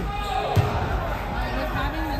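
Basketball bouncing on a hardwood gym court, one clear thump about half a second in, over gym ambience with voices in the background.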